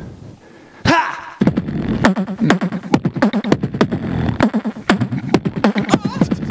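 Beatboxing into a microphone, layered into a beat: after a near-quiet first second comes one vocal sound dropping in pitch, then from about a second and a half a fast, repeating rhythm of sharp mouth-percussion hits with pitched vocal sounds mixed in.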